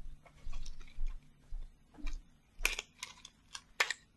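Small white cardboard box and its packaging being handled and opened: irregular crinkles and clicks, with soft low bumps.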